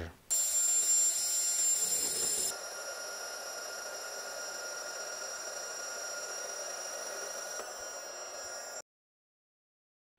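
FEIN AKBU 35 cordless magnetic core drill running, its annular cutter boring upward through a steel beam, with a steady high whine. The sound drops abruptly to a quieter steady run about two and a half seconds in, and stops about a second before the end.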